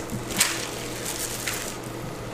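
Quiet handling of food and packaging at a table: two light clicks, one about half a second in and one about a second and a half in, over a low steady hum.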